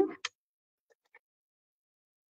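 A few faint light ticks from a Stampin' Seal adhesive tape runner being run over cardstock, following the tail of a spoken word.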